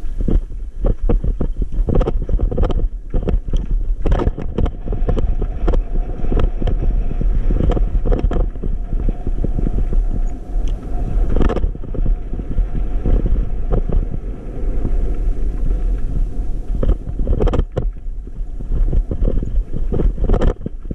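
E-bike rolling over a rough, rocky dirt track, heard through the camera microphone: wind on the microphone and a heavy rumble, with constant irregular knocks and rattles as the bike jolts over stones.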